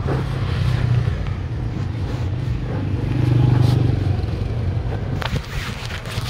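Street traffic with a motor vehicle engine running close by. The engine hum grows louder about three seconds in, then eases off.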